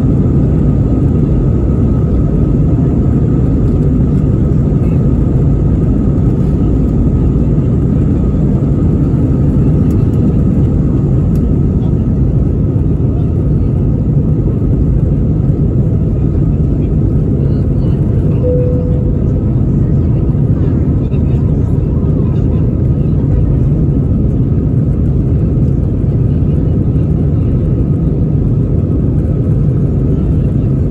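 Airbus A320-200 jet engines at takeoff thrust, heard inside the cabin: a loud, steady rumble with a thin high whine above it through the takeoff roll, lift-off and climb. A short tone sounds about two-thirds of the way in.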